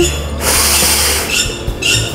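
A deep breath drawn in, heard as a soft hiss lasting under a second, during a yoga breathing exercise. Background music with a steady low bass runs under it, and two short high taps come near the end.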